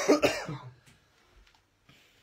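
A man coughing briefly near the start.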